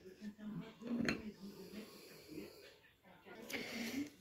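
Faint breathing and soft, indistinct murmured voice sounds from a woman, with a breathy hiss near the end.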